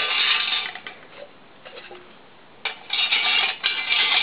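Metal rods scraping and clinking against a thin galvanized-steel camp stove as they are pushed through its side holes to make pot supports. This comes in two bouts, one at the start and one from about two and a half seconds in.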